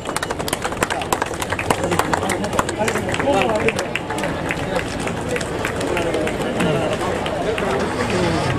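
A crowd clapping, many irregular hand claps. From about three seconds in, a babble of many voices grows over the clapping.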